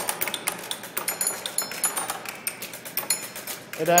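A sound-art cabinet of wooden card-catalogue drawers playing with several drawers open at once: small objects inside are tapped and rattled by little magnetic units, giving many quick clicks and rattles with short high pings among them.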